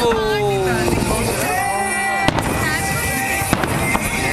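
Aerial fireworks shells bursting, with a sharp bang about two and a quarter seconds in and another about three and a half seconds in.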